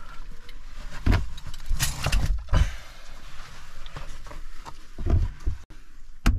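A caver's boots, gloves, clothing and gear scraping and knocking against mud and rock while squeezing down through a tight hole. There are irregular knocks, the strongest about a second in, around two seconds in and again around five seconds in, over a rough scraping rustle.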